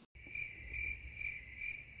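Crickets chirping in an even run of about two to three chirps a second, starting abruptly out of dead silence like a dropped-in sound effect.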